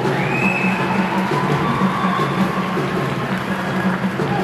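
Spectators' drums beating a steady rhythm in a large indoor arena during a sepak takraw match. Near the start a shrill high tone rises quickly and holds for about a second over the drumming.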